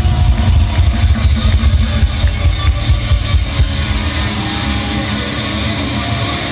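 A live heavy metal band playing loud through the venue PA, with pounding drums and distorted electric guitars. The drums drop out about four seconds in, leaving the guitars sustaining.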